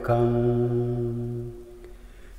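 A solo male voice chanting Pali Buddhist verses (pirith), holding one long steady note at the end of a line that fades out about a second and a half in.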